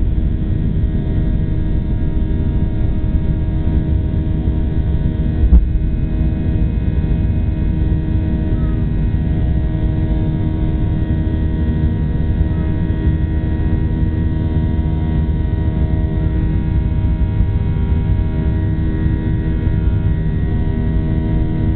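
Cabin sound of a Boeing 737-800's CFM56-7B turbofan engines at takeoff thrust, heard beside the engine as the jet lifts off and climbs: a steady deep rumble with steady humming engine tones. A single thump about five and a half seconds in.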